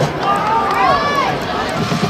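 A few high-pitched, drawn-out shouts from spectators, rising and falling in pitch, over general crowd noise.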